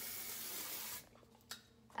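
TRESemmé dry shampoo aerosol can spraying in a steady hiss onto hair, cutting off suddenly about a second in. A single light click follows.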